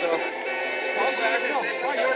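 A man's voice in a halting interview answer, with background music running underneath.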